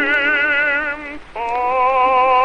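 Operatic baritone voice in an old acoustic recording, holding a long vibrato note over orchestral accompaniment, breaking off about a second in and then taking up a new, lower note.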